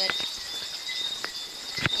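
Steady high-pitched chirring with a few sharp clicks.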